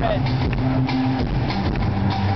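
Gypsy punk band playing live and loud, with bass, drums and hand percussion, heard from the audience.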